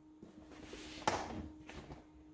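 Hands shifting an inflatable PVC paddle board on a wooden floor: one soft thump about a second in, with light scuffing and rubbing around it.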